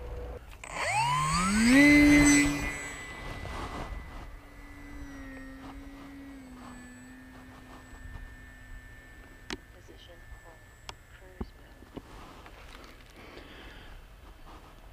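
Electric motor and tractor propeller of a small foam RC plane spinning up in a rising whine over about a second, then holding a steady hum that drops a little in pitch and slowly fades.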